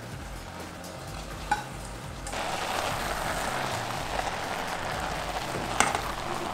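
Chopped cabbage and squash sizzling in a stainless steel pot, the sizzle growing suddenly louder about two seconds in and holding steady. There is a sharp click just before the end.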